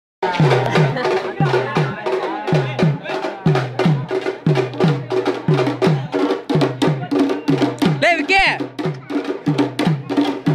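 Drums beating a fast, steady rhythm of about four strokes a second, each stroke with a low, falling boom. A high tone that slides up and down cuts across the drumming about eight seconds in.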